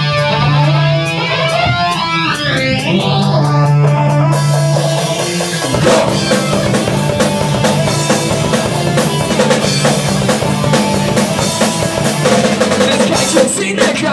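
Live rock band starting a song: an electric guitar holds a low note under sweeping, warbling effects, then cymbals and drums come in about four to six seconds in, and the full band plays on loudly.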